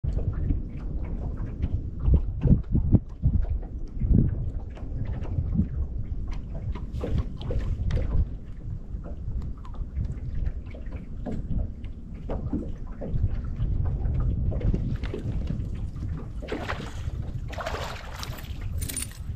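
Wind rumbling on the microphone aboard a bass boat, with water lapping at the hull and scattered knocks on the deck. A brief hiss rises near the end.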